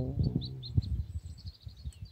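A small bird chirping, a quick series of short high chirps over the first second and a half, with wind buffeting the microphone in a low, uneven rumble.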